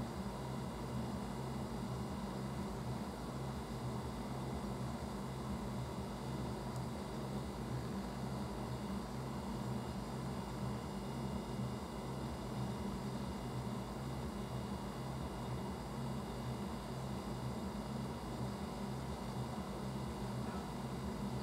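Steady low hum with a constant hiss, unchanging throughout.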